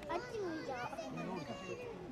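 Overlapping voices of children and adults chattering and calling out, several high-pitched children's voices among them.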